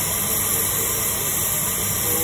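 Hot-air rework station blowing a steady hiss of hot air from its nozzle onto a phone logic board, heating the solder of a tiny capacitor being replaced on a shorted line.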